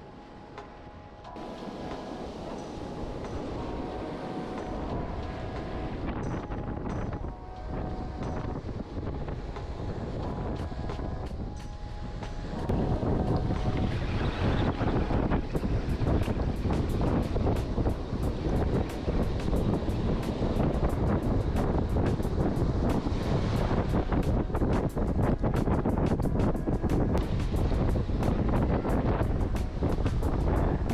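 Background music over the sound of surf for roughly the first twelve seconds. Then a sudden change to loud wind buffeting the microphone and waves washing up the beach, which carries on to the end.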